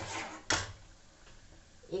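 Metal ladle stirring thick masala gravy in a non-stick kadai, then one sharp knock about half a second in as it strikes the pan, followed by only faint background hiss.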